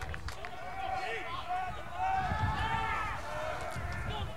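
Several distant voices on a lacrosse field calling and shouting over one another, with a low steady rumble underneath.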